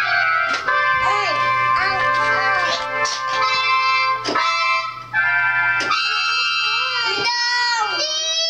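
Electronic keyboard played by children in held chords and notes that start and stop every second or so, with a child's voice over it.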